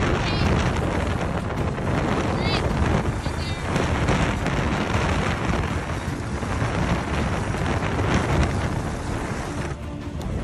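Strong wind buffeting the microphone on a moving dog sled: a loud, steady rush. A few brief high squeaks come through it in the first four seconds.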